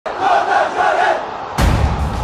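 A crowd chanting in unison, then a sudden deep hit about a second and a half in.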